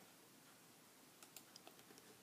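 Near silence, with a few faint, quick computer clicks in the second half as items are clicked through on screen.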